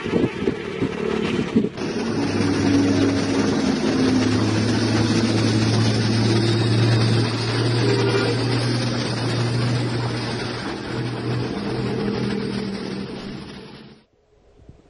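Diesel engine of a heavy flatbed truck hauling an excavator, passing close by with tyre and road noise. The engine holds a steady low drone, then fades over the last couple of seconds.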